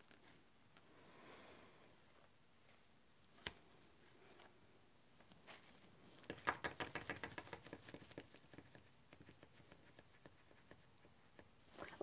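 Faint patter of small taps and scrapes from hands and tools working on watercolour paper: a single click about three and a half seconds in, then a quick run of light taps from about six to nine seconds in, with near silence around them.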